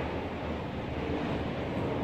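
Steady background noise, an even hiss over a low hum, with no distinct events.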